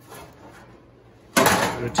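A short, loud scrape and rattle of sheet steel as the trunk floor pan and frame rail section is shifted, starting about a second and a half in. Before it there is only faint room tone.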